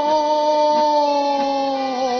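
A singer holding one long, steady note in a sevdalinka song, sinking slightly in pitch near the end, over a faint sustained accompaniment.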